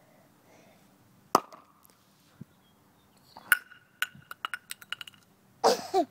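A film-canister Alka-Seltzer rocket goes off with a single sharp pop about a second in. About two seconds later the small plastic canister lands and clatters on the asphalt, bouncing several times with short ringing clicks that die away. A brief rustling burst follows near the end.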